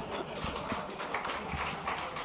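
Irregular sharp taps and knocks, a few each second, with no speech over them.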